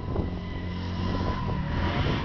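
Vehicle engine running hard through a burnout, a steady low drone, with tyre smoke pouring off the spinning rear wheels.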